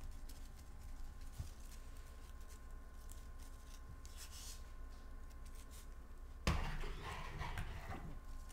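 Faint room tone with a steady high hum, then, about six and a half seconds in, a brief rustle of a ribbon and scissors being handled near the microphone.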